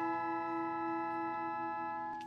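Symphonic orchestra holding a sustained chord, with bell-like tones ringing steadily over it.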